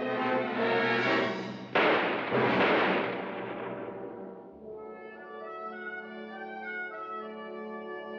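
Orchestral film score with loud brass, broken about two seconds in by two revolver shots a little over half a second apart that ring on. The music then settles into a quieter held chord.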